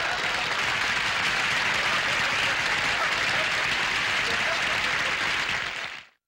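Studio audience applauding at the end of a sitcom scene, fading out near the end.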